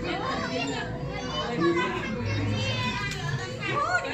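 Crowd chatter with children's voices: many people talking over one another, with no single clear voice.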